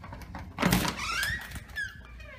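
A door being opened, with a thunk about half a second in, followed by a high squeak that rises and then falls.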